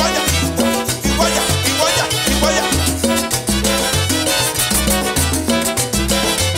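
Live salsa band playing an instrumental passage, with a repeating bass line under percussion and brass.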